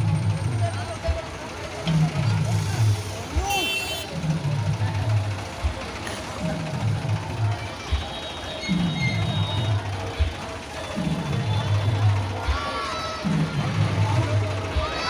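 Loud DJ dance music through a big sound system. A heavy bass phrase slides down in pitch and repeats about every two seconds over a kick beat, with voices mixed in.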